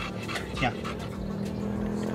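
American bulldog taking a treat from a hand, with short breaths and small mouth clicks.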